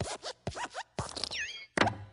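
Pixar logo sound effects: the animated desk lamp's squeaky springs and thuds as it hops several times on the letter I and stomps it flat. The hops come about every half second, and the loudest thud falls near the end.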